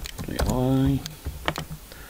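Typing on a computer keyboard: quick, irregular keystroke clicks. A short wordless voiced sound from the typist comes about half a second in and is the loudest sound here.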